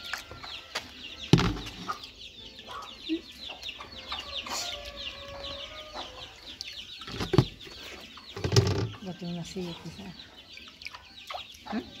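Chicks peeping in a steady stream of short, high, falling chirps, with hens clucking among them. A few sharp knocks cut in, the loudest about a second and a half in and again around seven and a half seconds.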